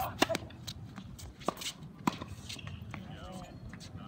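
Tennis ball struck by rackets during a doubles point: a sharp serve hit just after the start, then several more hits and bounces, the clearest about one and a half and two seconds in, with faint voices near the end.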